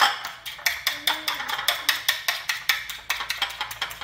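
A fork beating eggs in a glass bowl: a quick, even run of clicks of metal against glass, about five or six strokes a second.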